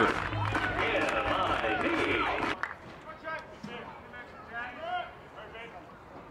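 Several voices shouting and cheering as a home-run hitter comes in to score. About two and a half seconds in the sound drops suddenly to a quiet ballpark with a few faint, distant voices.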